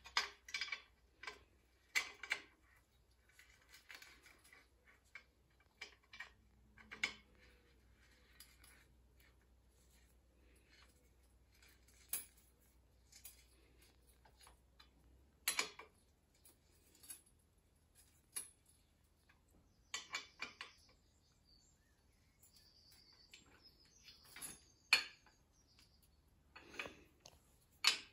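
Steel spanner clinking against bolts and a steel frame as the bolts are worked and tightened: scattered sharp metallic clicks and clinks with quiet gaps between them.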